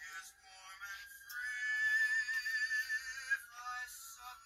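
Background music: a high, thin singing voice holds one long wavering note, which stops a little after three seconds in.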